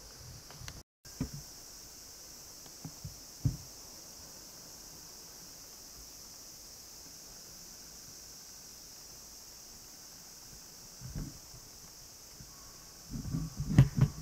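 Quiet room tone with a steady high hiss, broken by a few faint soft knocks, about one, three and eleven seconds in.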